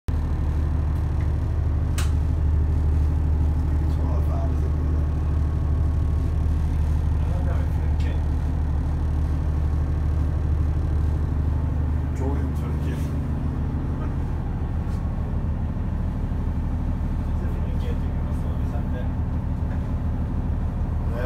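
Steady low drone of a vessel's engine and machinery, heard inside the wheelhouse, with a couple of sharp clicks and faint distant voices.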